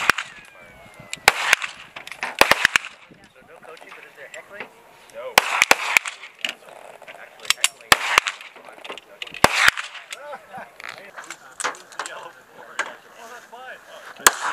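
Pistol shots from several shooters on a firing line. Sharp single reports come at irregular intervals, some in quick pairs and clusters of three or four.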